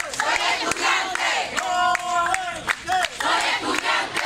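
Crowd of protesters shouting together, several voices overlapping in long held shouts, with sharp hand claps throughout.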